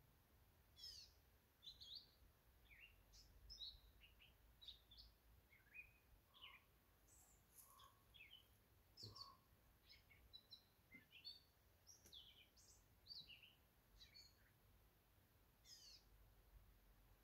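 Faint birdsong: many short chirps and quick twittering calls, scattered unevenly throughout.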